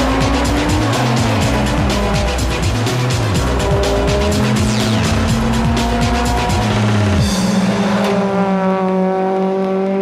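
Backing music with a heavy, regular beat plays over a racing car until about seven seconds in. The music then stops and a Vauxhall Vectra BTCC touring car's engine is heard alone, its note rising slowly as the car accelerates.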